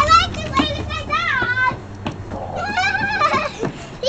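A toddler squealing and babbling without words in high-pitched, sing-song bursts, about four short calls that rise and fall in pitch.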